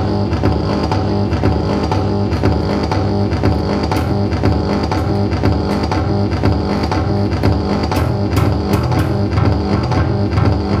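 Electric bass guitar played solo through a Zoom B2.1u multi-effects pedal's delay, notes overlapping with their repeats into a continuous, even-level line. A few sharp, bright attacks stand out around eight seconds in.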